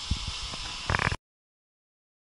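Handling noise from an exhaust pipe being turned in its box and plastic wrap: a few light clicks and a brief rustle just before a second in, over a steady recording hiss with a faint constant tone. The sound then cuts off suddenly to dead silence.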